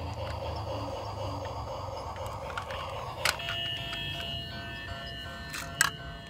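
Quiet electronic music: a faint busy texture, then steady held tones from a little past halfway, with two sharp clicks.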